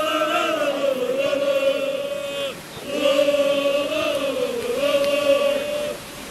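MFK Ružomberok's travelling football supporters chanting in unison, with massed voices holding long sung notes. There are two phrases, with a short break about halfway through.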